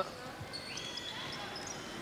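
Live basketball court sound on a hardwood floor: a ball bouncing, and a high sneaker squeak about a second in, over a low murmur from the crowd.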